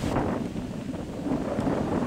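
Wind buffeting the microphone: an uneven low rumble with no machine running.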